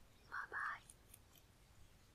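A woman's brief soft whisper, two short syllables about half a second in, over quiet room tone.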